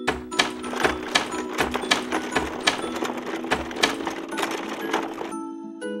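Cartoon sound effect of roller garage doors rolling up: a fast, rattling run of clicks over a steady held tone in the music, stopping shortly before the end.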